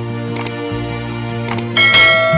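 Background music with the click sound effects of an animated subscribe button, two short clicks, then a bright ringing bell chime near the end as the notification bell is clicked.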